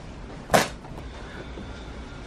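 A brief swish of handled cloth about half a second in, as a patterned fabric pillow cover is moved into a plastic basin, over a steady low rumble.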